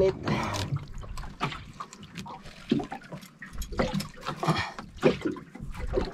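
Water splashing and dripping at the side of a small boat as a hooked fish comes up out of the sea, with irregular knocks and rustles of handling.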